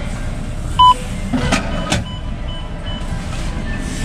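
Bank ATM: a loud beep about a second in as the coin option is pressed on the touchscreen, then the coin-slot shutter mechanism runs with a couple of sharp clicks, followed by three short high beeps. A steady low background hum runs underneath.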